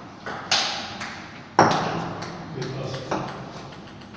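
Table tennis rally: a celluloid-type ball clicking sharply off paddles and the table, about eight hits. The hardest hit, about a second and a half in, is the loudest and rings on briefly in the hall, followed by a few lighter clicks.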